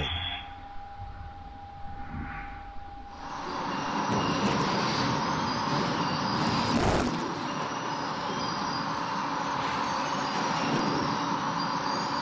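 Steady machinery noise of a sawmill log line, with conveyors and chains running, starting suddenly about three seconds in after a quiet steady hum. There is one brief louder burst about seven seconds in.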